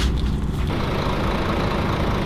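A large engine idling steadily with a low rumble, with a single sharp click right at the start.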